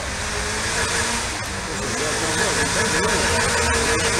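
Car engine revving under load as it climbs a dirt hill, its pitch rising and falling over and over.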